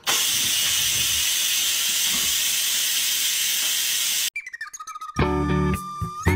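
Cuckoo electric pressure rice cooker venting a jet of steam from its pressure-release valve: a loud, steady hiss that starts suddenly and cuts off after about four seconds. Music follows near the end.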